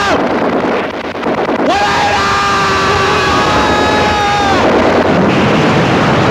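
A man's long drawn-out shout, a battle cry that starts about two seconds in and is held for about three seconds, over a steady rushing din of battle noise.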